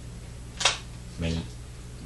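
A brief sharp click about half a second in, then a short murmured syllable from a woman's voice, over a steady low hum.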